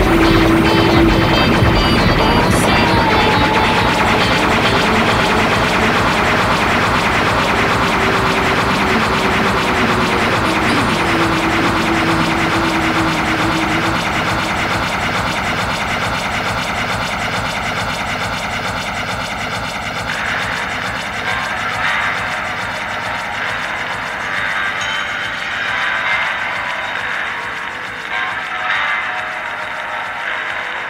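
Live electronic jazz band music: a dense, droning wash with a held low tone that slowly fades, thinning out about two-thirds of the way through into sparser sounds as the next piece begins.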